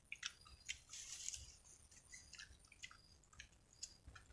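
Faint, scattered wet clicks and smacks of people chewing and eating fresh fruit at close range.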